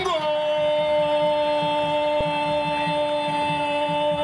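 Spanish-language football commentator's long goal cry, a drawn-out 'gooool' held as one steady, sung-like shout at a single pitch.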